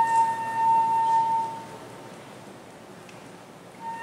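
Unaccompanied solo flute holding one long, slightly falling note that dies away about a second and a half in. A rest of about two seconds follows, and the next note begins near the end.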